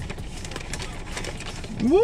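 Paper takeout bag rustling and crinkling in quick irregular crackles as a hand rummages inside it. Near the end a man's voice shouts a rising "woohoo".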